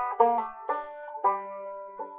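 Banjo being picked: three plucked notes about half a second apart, each left ringing.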